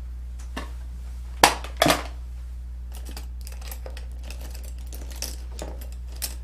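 Clicks and snaps of a lipstick case and makeup packaging being handled: a light click, then two sharper snaps about a second and a half and two seconds in, followed by a run of lighter ticks and rustles. A steady low hum runs underneath.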